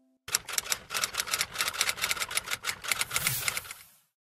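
Keyboard typing sound effect: a quick, uneven run of key clicks that starts a moment in and stops just before the end, as a search term is typed.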